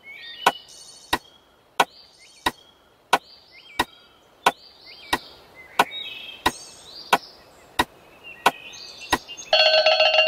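Sharp, dry knocks at an even, clock-like pace, about three every two seconds, with faint chirping between them. Near the end a short, bright ringing tone joins in.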